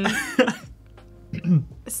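Short, scattered sounds from a person's voice with a quiet gap in the middle: a fading word, a brief throat-like noise, then a short falling vocal sound just before talk resumes.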